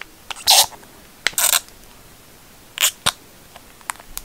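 Clear plastic phone case being fitted onto an iPhone 13 Pro Max: a few brief scrapes and sharp plastic clicks as the phone is pressed into the case.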